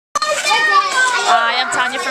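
Children's high voices calling and talking, with a woman's lower voice coming in about halfway through.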